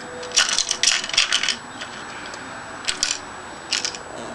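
Small loose fingerboard parts clicking and rattling against each other inside a small box as it is handled: a quick flurry of light clicks in the first second and a half, then two short bursts near the end.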